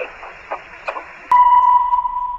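Hiss of a recorded telephone line with a few faint clicks, then about a second in a click and a loud, steady electronic beep at one pitch that holds on, the tone that ends the recorded phone message.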